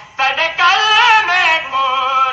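A voice singing a noha, a mourning lament, in a long, wavering, drawn-out melodic line. It breaks off for a moment at the very start, then comes back in and holds on.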